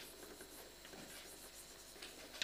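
Chalk writing faintly on a blackboard.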